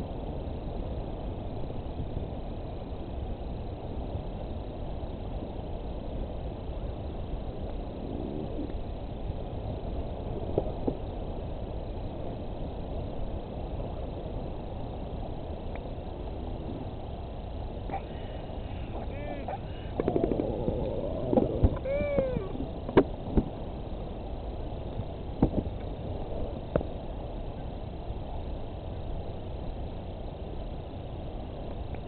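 Steady wind noise on the microphone, with a cluster of short rising-and-falling calls from the northern royal albatross nest about two-thirds of the way through, mixed with a few sharp clicks.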